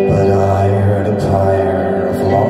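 Live psychedelic folk music on two guitars, acoustic and electric, holding sustained droning notes.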